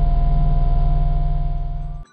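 Loud, steady, low electrical hum with a buzz and a single steady tone over it, a sound effect laid under a title card; it cuts off suddenly at the end.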